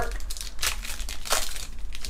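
Foil Pokémon TCG Darkness Ablaze booster pack wrapper crinkling as it is torn open by hand, with two louder bursts of crackle, one about half a second in and one past the middle.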